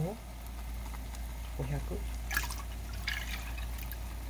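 Milk being poured from a glass measuring cup into a saucepan: short splashing pours about two and three seconds in, ending in drips. A steady low hum runs underneath.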